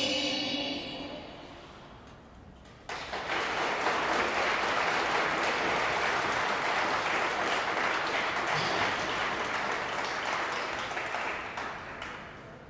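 The skating program music fades out, and about three seconds in an audience bursts into applause that holds steady and then tails off near the end.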